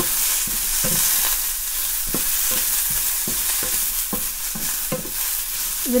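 Coconut pieces, coriander stems and ginger sizzling in a frying pan, with a steady hiss, while a wooden spatula stirs them in repeated short scraping strokes, two or three a second.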